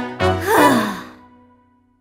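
A cartoon character's voice giving one loud, breathy sigh that falls in pitch, over the last chord of a children's song. Everything dies away to silence about a second and a half in.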